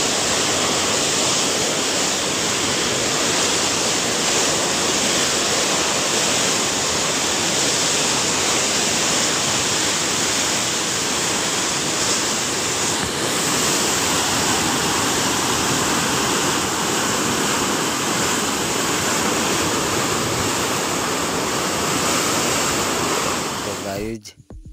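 Water released through a dam's sluice gates rushing down a concrete outflow channel in white, foaming torrents: a loud, steady rush of water.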